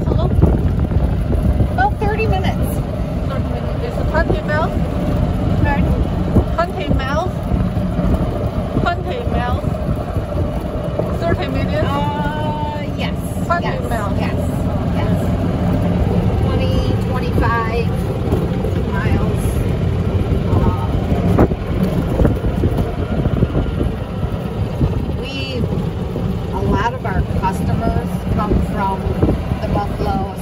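Steady low rumble of wind buffeting the microphone while riding along, with muffled voices underneath.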